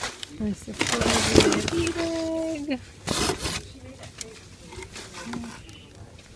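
Crumpled packing paper and plastic wrap rustling and crinkling as hands dig through a shipping box, loudest about a second in and again about three seconds in. A short held hum from a voice sounds between them.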